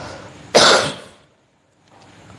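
A single loud, sudden cough about half a second in, dying away within half a second.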